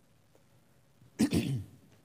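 A man clearing his throat once: a short, harsh burst about a second in.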